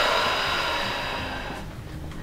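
A long, breathy exhale that fades away over about two seconds, while the neck is drawn in a strap traction device; no joint pop is heard.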